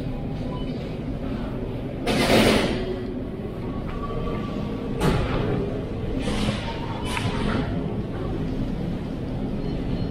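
Supermarket ambience: a steady low hum with faint background music, broken by a few short bursts of noise, the loudest about two seconds in.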